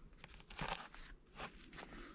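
Faint handling sounds: a few light clicks and rustles as a ring is pressed into a foam-slotted ring display tray and the tray is moved.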